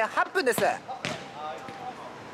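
Futsal players shouting to each other during play, loud short calls in the first second, then a single thud of the futsal ball about a second in.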